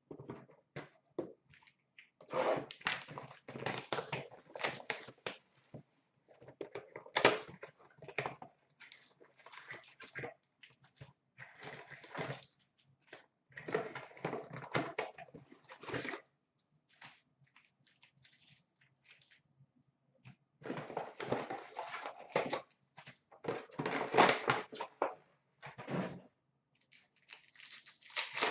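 Hockey card packs being torn open and the cards handled: bursts of crinkling wrapper and rustling, flicking cards, several seconds long, with short pauses between.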